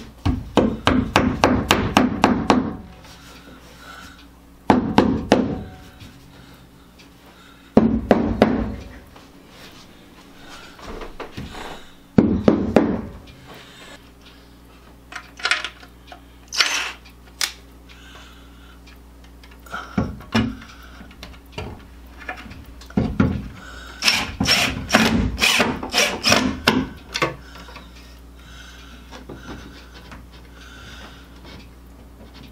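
Hammer tapping plastic wall anchors into drilled holes in the wall: quick runs of sharp taps, about six a second, in several bursts. The longest runs come at the start and near the end.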